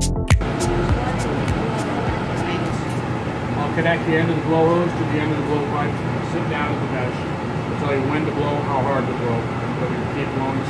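Steady, even hum of glassblowing studio equipment, with a man talking indistinctly over it from about three seconds in. A moment of music ends the first fraction of a second.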